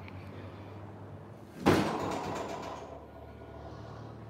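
A single sudden noise about one and a half seconds in, fading away over about a second, over a steady low hum.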